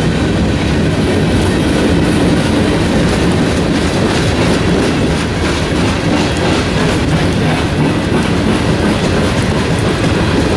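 Freight train of tank cars rolling past, a steady rumble with the regular clack of wheels over rail joints.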